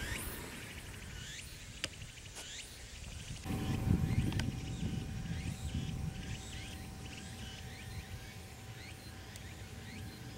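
Outdoor ambience with birds chirping over and over. There are a couple of sharp clicks about two seconds in, and a low rumble with a faint steady hum comes in after about three and a half seconds.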